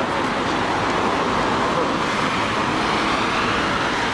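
Steady road traffic noise with no clear rise or fall.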